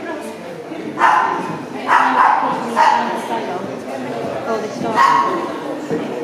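A dog barking: three barks about a second apart, then another near the end, over the murmur of people talking.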